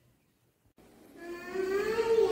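Near silence, then about a second in a young girl's voice starts in long, drawn-out held notes.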